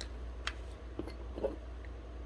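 A few faint clicks as a hot glue gun and wooden dowels are handled on a cutting mat, over a low steady hum.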